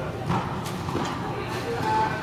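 A few sharp knocks of tennis balls bouncing and being hit in an indoor tennis hall, over the hall's background noise and voices.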